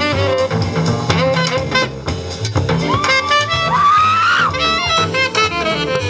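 Live jazz band playing: a saxophone line over upright bass, with one long held note that bends upward about three seconds in and breaks off shortly before five seconds.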